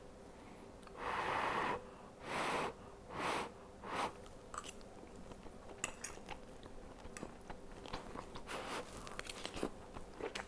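A man chewing a mouthful of tender braised oxtail, with four breathy puffs in the first four seconds, then soft chewing and small mouth clicks.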